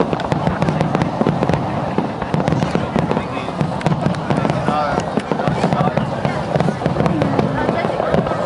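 Aerial fireworks display: a dense, continuous run of sharp crackling pops and bangs from bursting shells, with people talking close by.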